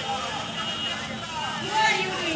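Faint voices talking over steady outdoor background noise, with a briefly louder voice near the end.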